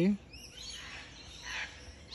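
Faint bird calls and chirps in woodland: a few short high chirps just after the start and a softer call about halfway through, over a low outdoor background hum.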